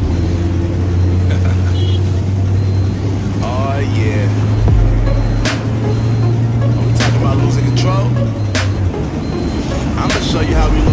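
Moving-vehicle ride noise: a steady low engine drone with road traffic around it, mixed with music and voices, and a few short sharp clicks. The drone fades out near the end.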